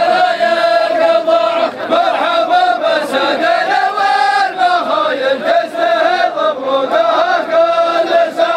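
Men chanting a sung poem together in long, drawn-out melodic phrases.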